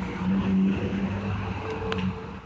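2001 Honda Shadow VT750 ACE Deluxe's V-twin engine idling steadily, with a short click near the end.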